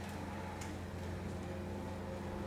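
Church bell ringing: several steady tones sounding together, coming in right at the start, with a light click about half a second in.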